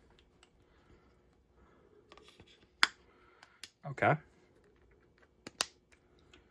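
A few sharp, separate clicks and taps as a phone and small plastic parts are handled, over quiet room tone. The loudest click comes just before three seconds in, and a quick pair comes near the end.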